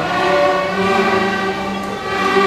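A beginning student string orchestra of violins, violas and cellos plays a slow tune in long held notes, moving to a new note about every second.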